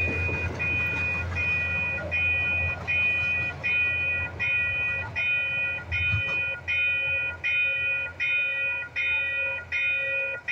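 Grade-crossing electronic warning bell ringing in a steady, even rhythm, about one ring every three-quarters of a second. Under it the low rumble of the passing commuter train fades out about six seconds in.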